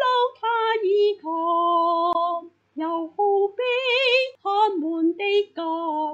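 A woman singing a Chinese hymn solo and unaccompanied, in short phrases with brief breaks, and one longer held note with vibrato about four seconds in.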